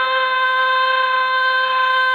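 A woman's voice holding one long, steady sung note in a Turkish folk song, played from a 78 RPM shellac record on a gramophone. It has the narrow, dull sound of an old disc, with faint surface hiss.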